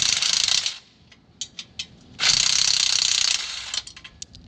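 DeWalt cordless driver turning a socket on an extension against the bolts of an old trailer tongue jack, removing them. It runs in two bursts: one at the start lasting under a second, and a longer one of about a second just past the middle.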